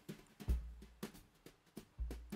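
Faint, irregular ticks and scrapes of a wooden stick against a small pot as a sugar and petroleum-jelly lip scrub is stirred, with two soft low thuds, one about half a second in and one at the end.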